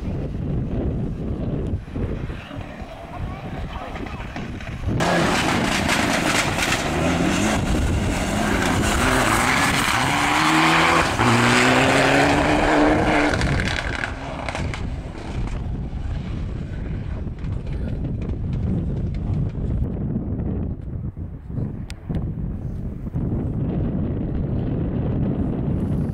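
Rally car on a gravel stage approaching and passing: from about five seconds in its engine grows loud, rising in pitch in steps as it changes up through the gears, with the hiss of tyres on loose gravel, and it fades away after about fourteen seconds. A low wind rumble on the microphone fills the rest.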